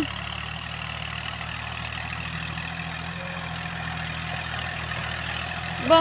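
L36 tractor's diesel engine running steadily under load as it pulls a three-disc plough through sugarcane stubble. An even drone holds at one pitch throughout.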